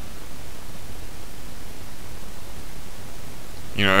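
Steady, even background hiss of the recording's noise floor, with no other sound in it; a man's voice starts just before the end.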